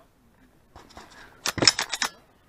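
Quick cluster of sharp metallic clicks and clacks from a Just Right Carbine 9mm being cleared by hand after a string of fire, starting about a second and a half in.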